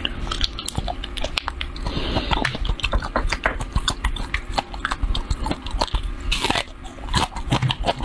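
Close-miked chewing and biting of food: a steady run of small, irregular crunchy and wet clicks, with a short breathy rush about six seconds in.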